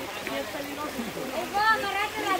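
Several people's voices talking in the background, over the steady rush of a shallow, fast-flowing stream.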